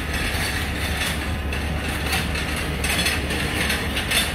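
Key-cutting machine running with a steady motor hum, its cutter grinding into a metal key blank in short, uneven bursts as the key is worked along it.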